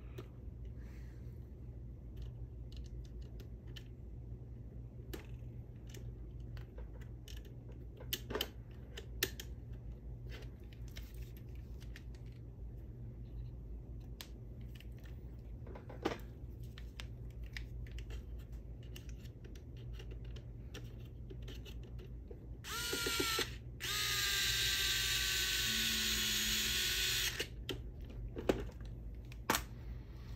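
Small cordless electric screwdriver running: a short burst, then a steady whine of about three seconds with its pitch sagging slightly, as it drives a bolt into the RC chassis's upper link mount. Before it, faint scattered clicks of small parts being handled.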